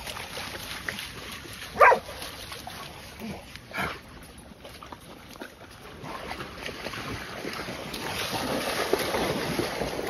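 A dog barks sharply about two seconds in, and again more weakly about two seconds later. Toward the end, water splashing grows louder as dogs wade through shallow water.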